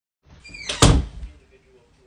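A door shutting with a single sharp thud about a second in, dying away within half a second.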